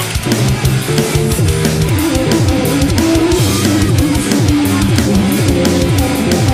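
Loud music with guitar and a drum kit, with a steady beat.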